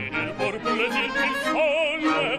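Operatic singing with symphony orchestra accompaniment. About one and a half seconds in, the voice rises to a high held note with a wide vibrato.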